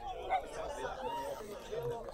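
Indistinct chatter of people talking in the background.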